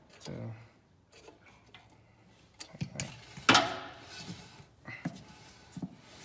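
VW Beetle front drum brake: a few light clicks, then a sharp knock about halfway through as the raised wheel is slapped and spun by hand. The tyre and drum turn with a rubbing whirr that fades, the shoes dragging a bit after adjustment.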